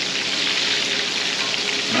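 Flour-coated pork chops frying in hot canola oil in a skillet: a steady, even sizzle and crackle.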